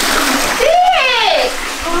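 Toilet flushing, water rushing and swirling into the bowl, under a loud exclaiming voice.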